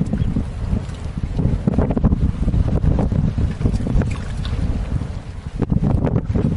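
Wind buffeting the microphone over open water: a loud, uneven low rumble.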